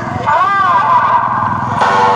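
Motorcycle engines running in a moving procession, with a loud human voice over them that rises and falls in pitch about half a second in.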